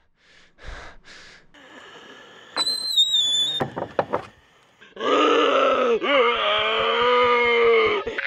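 A man's loud, drawn-out zombie groan, lasting about three seconds and dipping in pitch partway through, after a quieter stretch with a short high wavering whistle-like tone about three seconds in.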